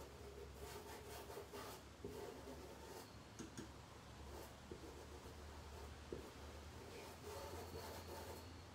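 Faint scratching of a paint brush's bristles working paint into cloth in short irregular strokes, over a low steady hum.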